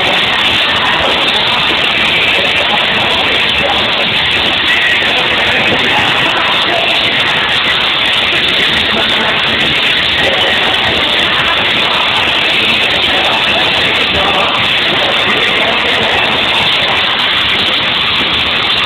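Pop-rock band playing live in an arena, recorded from among the audience: a loud, steady, dense wash of band sound with no clear notes.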